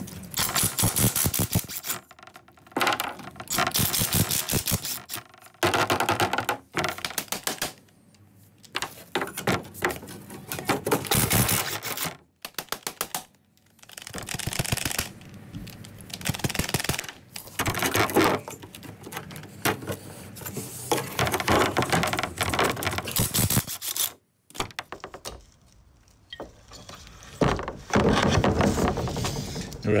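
Handheld pneumatic impact tool rattling against a Lambretta's aluminium cylinder-head fins. It runs in repeated bursts of one to several seconds, with short pauses between them.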